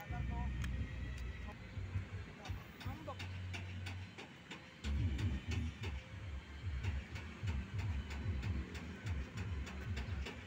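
Wind buffeting the microphone in gusty low rumbles, with faint voices and a few light clicks in the background.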